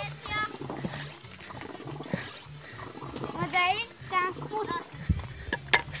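Children's high-pitched voices calling out in short bursts, with a few sharp clicks near the end.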